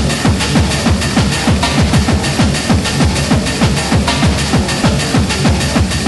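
Hardcore gabber techno: a pounding distorted kick drum at about three beats a second, each hit dropping in pitch, under a dense wash of higher synth and percussion sound.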